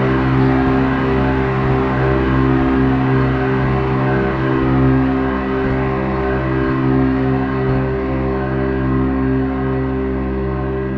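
Ambient post-rock instrumental: layered, sustained electric-guitar drones through an amp, holding steady chord tones throughout.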